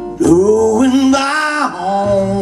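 A man singing a long held note that bends in pitch, accompanied by acoustic guitar. The voice comes in about a quarter second in.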